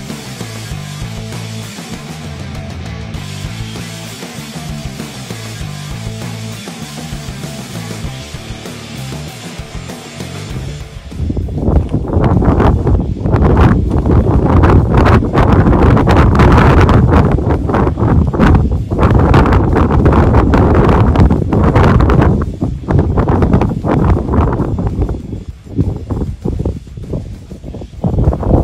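Background music for roughly the first ten seconds, then loud wind buffeting the microphone in gusts for the rest.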